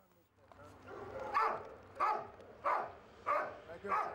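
A dog barking repeatedly: about five short barks, evenly spaced a little over half a second apart, starting about a second in.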